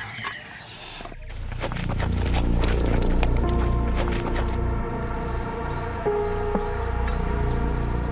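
Tense background score for a drama, with a deep low rumble that swells up about a second and a half in and sustained held tones over it.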